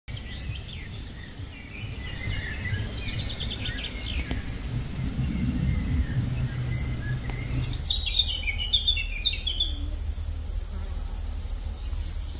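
Songbirds singing, with a rapid trill about three seconds in and a burst of chirping calls about eight seconds in, over a steady low rumble.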